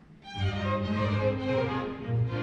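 A string orchestra, cellos included, comes in loudly about a third of a second in with sustained bowed chords: the opening of a piece.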